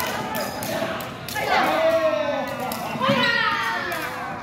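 Jianzi (feathered shuttlecock) kicked back and forth, with sharp taps off the players' feet echoing in a large hall, and people's voices calling out over them.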